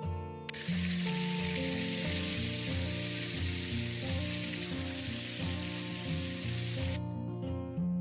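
Pieces of rohu fish sizzling as they are laid into a pan of hot mustard oil to fry. The sizzle starts about half a second in and cuts off suddenly near the end, over background music.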